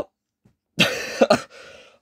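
A man's short, breathy laugh about a second in: a few quick bursts of breath that fade to a faint trail.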